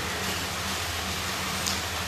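Steady background noise with a faint low hum, with no speech.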